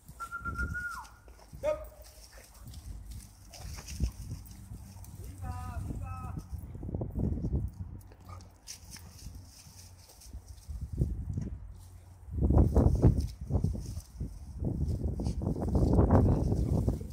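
Two dogs play-fighting in dry shrubs: scuffling and rustling through brush, with a few short high-pitched calls. The scuffling gets louder over the last few seconds.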